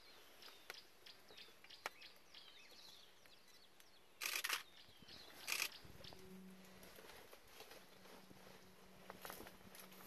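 Small birds chirping with short falling calls. Then come two loud crackling bursts, about four and five and a half seconds in, and a faint low steady hum after them.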